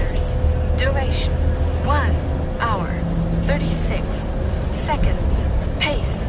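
Inside a moving city bus: a steady low rumble from the bus with a faint steady hum, and a person's voice talking in short phrases over it.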